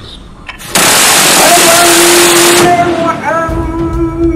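A sudden loud rush of noise starts just under a second in, lasts about two seconds and cuts off abruptly. A voice sings held, bending notes over it and on after it.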